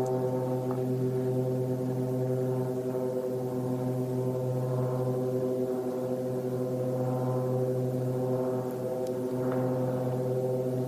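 A steady, unchanging drone: one low pitched tone with a stack of evenly spaced overtones, held without a break.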